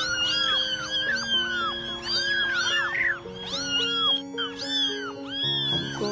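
Newborn kittens mewing over and over, several short high calls a second, some overlapping, over background music of slow held notes.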